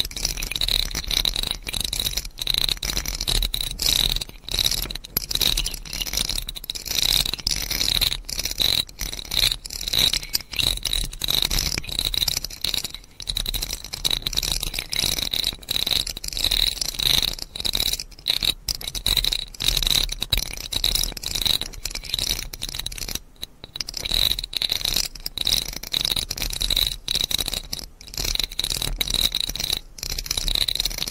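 Close-miked ASMR trigger sounds: a dense, unbroken run of rapid small scratches and clicks.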